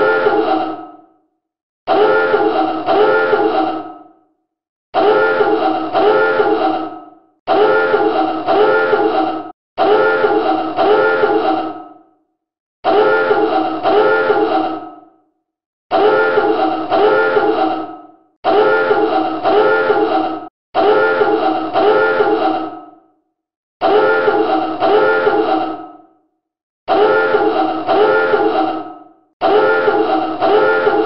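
Submarine dive alarm sounding over and over: loud, buzzy horn blasts in short bursts, about one every two and a half to three seconds, each fading away before the next.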